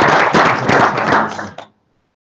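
Audience applauding, fading and cutting off to silence about a second and a half in.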